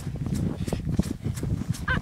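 Footsteps crunching through snow, irregular thumps about three a second, over a low rumble on the microphone.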